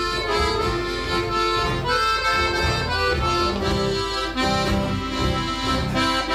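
Piano accordion playing the melody over fingerpicked acoustic guitar with steady bass notes: an instrumental break in a country song, with no singing.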